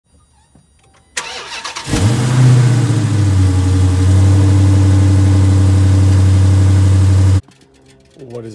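Dodge Challenger Scat Pack's 392 HEMI V8, on its stock intake, cranking briefly on the starter, catching and flaring up, then settling within a second into a steady, loud idle. The sound cuts off suddenly near the end.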